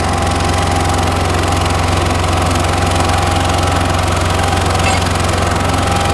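Small asphalt paver's diesel engine running steadily under the load of a full hopper of asphalt, a loud even drone with a constant higher whine over it.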